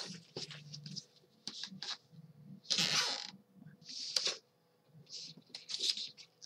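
Quarter-inch double-sided Scor-Tape pulled off its roll and wrapped around chipboard album hinges: several short bursts of tape noise, the longest about three seconds in, with quieter handling rustle between.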